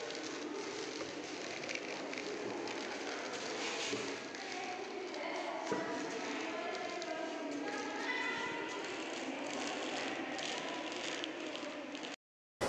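Faint, indistinct voices in the background over steady room noise, with a single sharp click a little before the middle.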